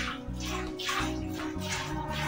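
Streams of milk squirting into a steel bucket from hand milking of a cow, in a quick, repeated rhythm of hissy spurts, over background music.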